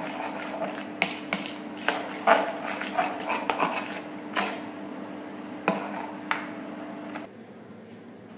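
A hand beating thin jalebi batter in a plastic bowl: irregular wet slaps and knocks against the bowl, about eight of them, over a steady low hum. Both stop about seven seconds in.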